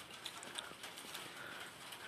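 Faint sounds of a person eating a snack by hand: soft scattered clicks and rustle over quiet room tone.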